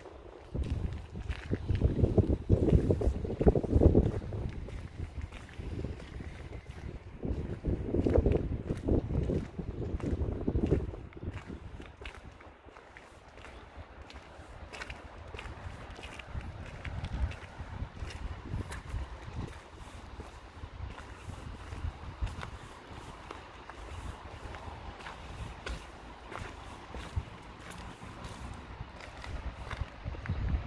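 Wind buffeting the microphone in gusts, two strong ones in the first third, then a lighter steady rustle. Footsteps on cobblestones tick through it as short clicks.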